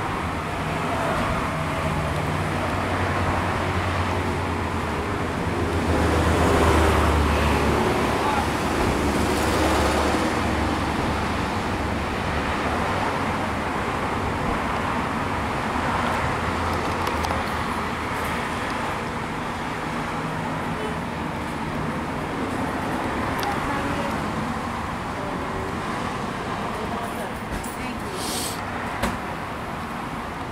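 Street traffic: a steady wash of road noise with a motor vehicle's engine running close by, loudest from about four to ten seconds in and swelling again later.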